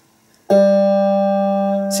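A single note plucked on the G string of a Squier Bullet Stratocaster electric guitar, fretted at the first fret (G sharp), starting about half a second in and left ringing steadily. The note plays way sharp because the string height at the nut is too high, a standard factory setup that makes the string stretch when pressed at the first fret.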